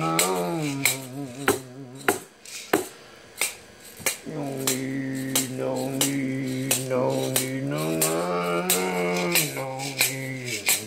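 A man's voice chanting long, wordless held notes with a wavering pitch, over a steady beat of sharp clicks about two a second. The voice breaks off for about two seconds a couple of seconds in while the clicks carry on.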